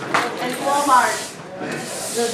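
Push broom's bristles scraping and rubbing across a wet floor as it is swept.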